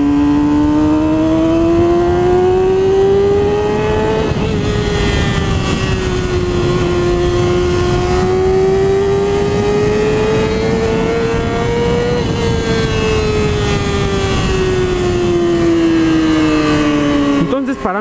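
Yamaha YZF-R6's 599 cc inline-four engine pulling hard under way, heard onboard with wind rush. Its high-pitched note climbs for about four seconds, drops slightly at a gear change, climbs again, and falls steadily for the last few seconds as the bike slows.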